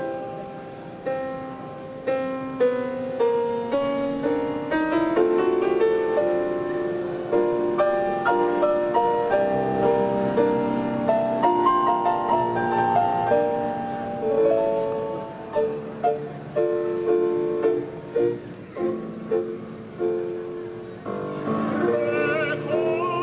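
1915 Steinway & Sons Model D concert grand piano playing a slow, lyrical operatic accompaniment of chords and melody.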